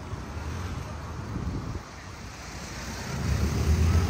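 Wind rumbling on the microphone of a camera carried on a moving bicycle: a steady noise that grows louder and deeper over the last second or so.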